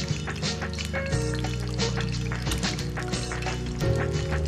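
Background music with steady low tones over an egg frying in hot oil in a stainless steel skillet. The oil crackles irregularly as it is spooned over the egg.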